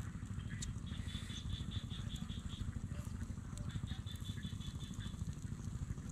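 Low, irregular rumble of wind buffeting the microphone in an open field, with a faint high-pitched chirping in quick pulsed runs twice.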